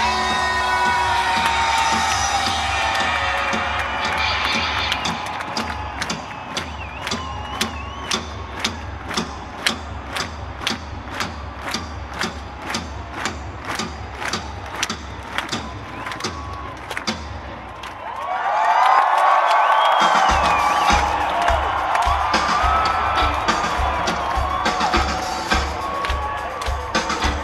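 Live rock concert: after held band tones fade in the first few seconds, a drum struck with sticks keeps a steady beat of about two strikes a second under a stadium crowd cheering and whistling. Near the end the crowd's cheering swells loudly over a low pulsing beat.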